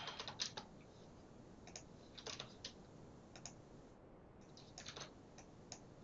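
Faint keystrokes on a computer keyboard, coming in short scattered clusters of a few taps each.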